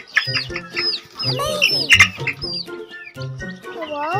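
Background music with a steady beat over baby chicks peeping in short falling chirps. A hen gives a loud squawk and clucks as she is grabbed and picked up, loudest around the middle.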